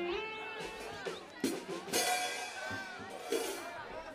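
Live cumbia band on stage, with a few scattered drum strokes and voices over it.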